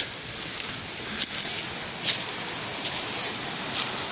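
Steady rush of a mountain stream, with a few short crackles of footsteps and brush through forest undergrowth.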